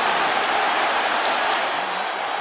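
Stadium crowd cheering steadily after a long run by the home team, heard through a radio broadcast feed; the cheering eases slightly near the end.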